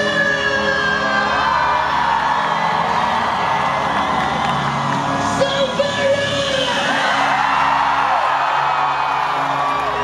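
Live pop music played through a stadium sound system, with the crowd whooping and yelling over it.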